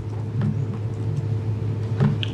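A steady low hum, with a faint steady higher tone above it.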